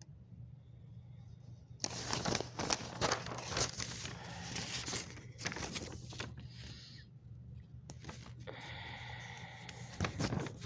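Rustling and scraping from the phone being handled and rubbed against its microphone, loud and crackly from about two seconds in, over a steady low room hum.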